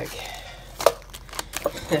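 Plastic-wrapped instant ice packs rustling and knocking as they are handled in a wooden box, with a sharp tap a little under a second in and a couple of lighter ones later.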